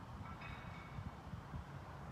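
Low, uneven outdoor background rumble, with a faint, brief high tone about half a second in.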